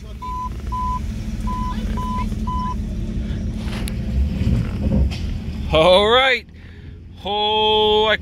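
Jeep Grand Cherokee WJ's 4.7-litre V8 running, heard from inside the cabin as it pulls away, with the dashboard warning chime beeping six times in the first three seconds. A man's voice comes in over it near the end.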